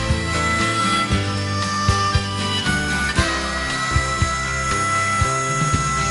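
Instrumental passage of a rock song: a drum beat about twice a second over bass, with long held high melody notes, the longest through the second half.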